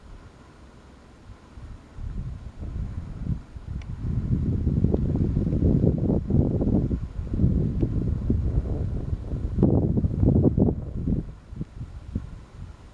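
Wind buffeting the camera microphone, a gusty low rumble that builds a few seconds in and dies away near the end.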